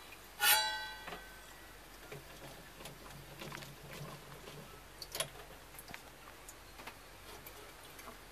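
A short metallic clank about half a second in that rings on briefly, then faint scattered clicks and rattles as metal trays and fittings in a machine cabinet are handled.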